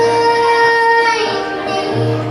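A young woman singing live to her own acoustic guitar: she holds one high note for just over a second, then her voice eases down and softens, with the guitar quiet beneath.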